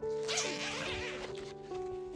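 A zipper being pulled open, a rasping noise lasting about a second and a half, over soft background music with held notes.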